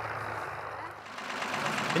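Tractor engine running faintly. The sound dips about halfway and swells again near the end.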